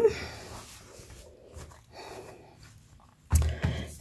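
Faint rustling of a denim cloth being spread out on a wooden tabletop, then a thump a little over three seconds in as a hand presses the denim flat.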